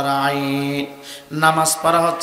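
A man's voice chanting a sermon in a drawn-out, sung style, holding one long low note for nearly a second, breaking off briefly, then starting a new wavering phrase.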